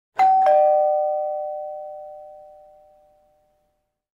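A two-note descending chime, ding-dong, in the manner of a doorbell. The second, lower note follows a quarter second after the first, and both ring out and fade away over about three seconds.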